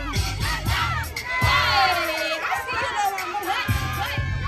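A crowd of children shouting and cheering over music with a heavy bass, with one loud, high-pitched yell about a second and a half in.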